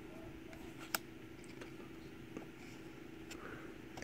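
Faint handling noise of Pokémon trading cards held and shifted in the hands: scattered light ticks, with one sharp click about a second in, over a faint steady hum.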